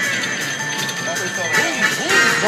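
WMS Super Monopoly Money slot machine playing its win count-up music as the win meter rolls up, with voices in the background.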